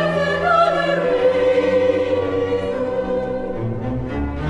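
Operatic singing with orchestral accompaniment: voices holding long sung notes over sustained orchestral chords, with the low strings shifting near the end.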